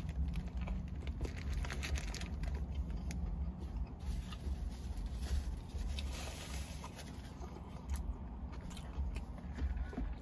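Close-up chewing of a Burger King Whopper: a bite, then many small wet mouth clicks and smacks as it is chewed, over a low steady hum.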